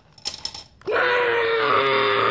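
A few light plastic clicks as a Connect 4 checker drops into the grid, then about a second in a child lets out a loud, raspy, sustained scream on one held pitch.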